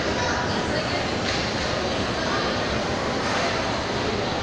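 Steady shopping-mall ambience heard while riding an escalator: an even rushing drone with background voices mixed in.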